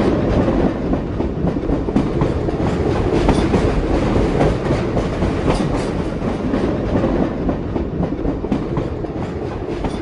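A steady, dense rumbling and rattling noise, mostly low-pitched, that starts suddenly and fades out near the end.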